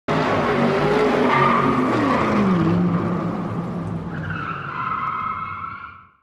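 Car engine running hard, its pitch dropping about two seconds in, then tires squealing for the last two seconds as the sound fades out.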